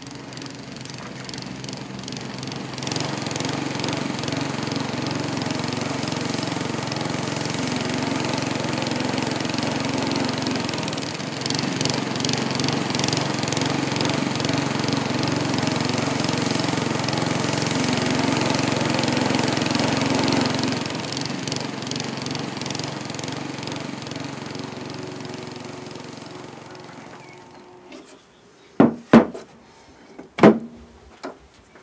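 Walk-behind lawn mower running steadily as it cuts grass, then fading away. A few sharp knocks near the end.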